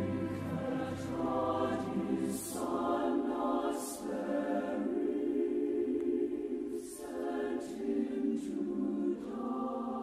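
Choir singing slow, sustained phrases, with sharp 's' consonants hissing through at a few points. A low accompanying note underneath drops away about two and a half seconds in.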